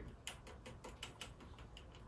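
Faint, irregular light clicks of a clip lead being tapped against a circuit terminal as it is reconnected.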